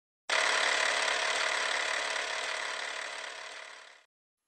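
Film projector running sound effect with the countdown leader: a steady mechanical rattle that starts suddenly and fades out toward the end.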